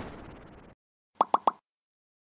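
Sound effects of an animated logo outro: the tail of a transition sound fading out in the first second, then three quick pops in a row about a second and a half in.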